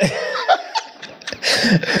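Two men laughing together, dipping in the middle and swelling into a louder burst of laughter near the end.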